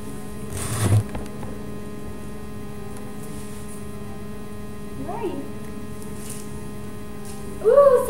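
Steady electrical hum with a single thump about a second in, then a brief voice sound around five seconds and a woman starting to speak right at the end.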